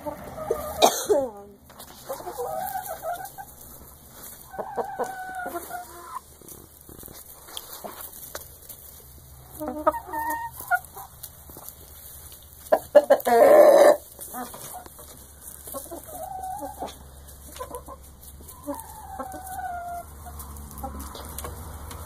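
A flock of chickens, hens and a rooster, clucking and calling close by in a series of short pitched calls, with a loud, harsh burst about halfway through.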